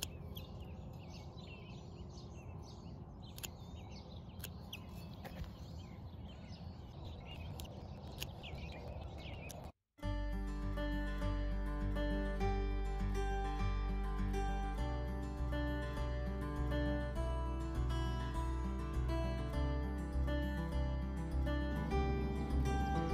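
Birds chirping over a low, steady outdoor rumble. About ten seconds in the sound drops out and background music with a steady beat takes over.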